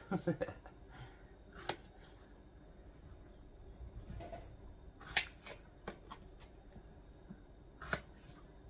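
Paring knife cutting strawberries in half on a plastic cutting board: a scatter of light, irregular taps and clicks as the blade goes through the fruit and meets the board.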